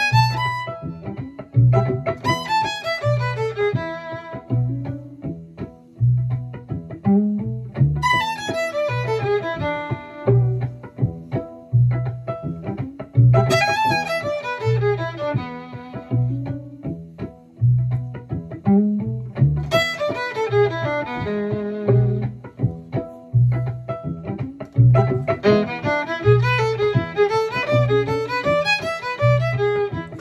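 Violin played fiddle-style: fast phrases of quick rising and falling runs on an E pentatonic scale with a flat seventh, with short gaps between phrases. Under it, a backing track keeps a steady low pulse.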